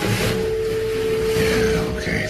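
Film sound design: a loud magical whoosh with a steady humming tone under it and a faint falling shimmer near the end, as the Eye of Agamotto is at rest on its stand.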